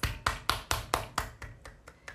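One person clapping her hands, a quick run of about ten claps at roughly five a second, growing fainter toward the end.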